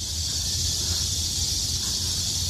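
A chorus of cicadas: a steady, loud high-pitched buzzing hiss, with a low rumble underneath.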